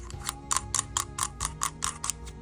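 Quick, regular clicking, about four or five ticks a second, as the knurled ring on the end of an Epilog Fusion laser lens assembly barrel is twisted by hand, over soft background music.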